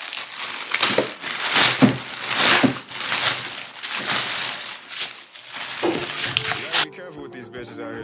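Plastic mailer bag crinkling and tearing as it is ripped open, in a run of loud rustles, with tissue paper rustling as the shoe box inside is unwrapped. About seven seconds in the rustling stops and a voice with music takes over.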